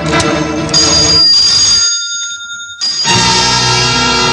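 Film background score: music that thins out about a second in, leaving a high, steady, ringing tone that stops shortly before the music swells back in fully just after three seconds.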